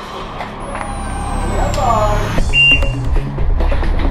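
Electronic shot timer's start beep, a single short high tone about two and a half seconds in, over background music with a steady beat.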